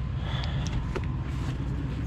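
An engine running steadily at a low idle, an even low rumble, with a few faint light clicks about half a second to a second in.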